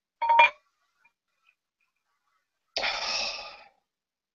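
A glass beer bottle clinks briefly against a drinking glass as beer is poured, ringing for a moment. About three seconds in comes a second of hissing noise that fades away.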